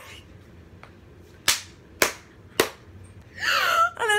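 Three sharp hand smacks, evenly spaced about half a second apart, followed near the end by a short breathy laugh.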